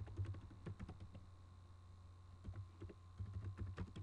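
Typing on a computer keyboard: faint, irregular key clicks, with a brief lull midway, over a steady low hum.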